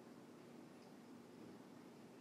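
Near silence: a faint, steady background hiss and low hum with no distinct sound events.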